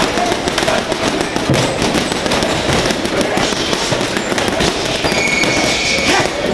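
Boxing gloves hitting a heavy bag in a rapid, unbroken run of hard punches, many slaps and thuds close together. A steady high tone sounds about five seconds in.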